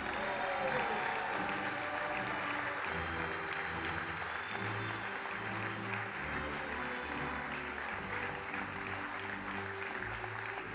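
Audience applauding steadily over slow processional music with long sustained notes.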